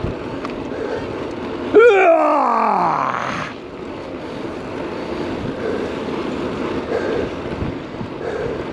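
Wind on the microphone and tyre noise of a bicycle rolling on a paved path. About two seconds in, a loud pitched sound starts suddenly and slides steeply down in pitch over about a second and a half.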